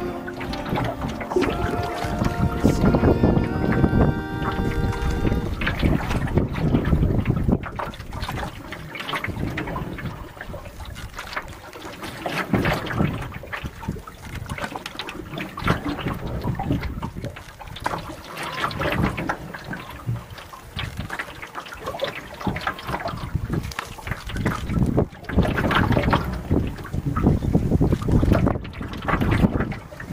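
Music with held notes fades out over the first few seconds. After that a canoe is being paddled: loud noisy swells every few seconds from the paddle strokes, water and wind on the microphone.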